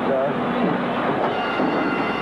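Steady noise of a large racetrack crowd waiting for the start, many voices blended into one continuous din.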